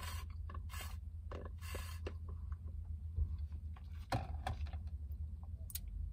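Slushie sucked up through a plastic straw: three short slurps in the first two seconds, then a few small clicks later on, over a steady low hum.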